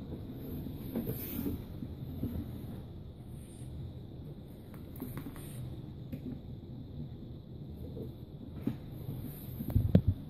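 Small taps and rustles of fingers placing tiny pieces on the trigger of a set wooden snap mouse trap on a wooden table, over a low steady rumble of handling noise. A single thump on the table just before the end; the trap does not spring.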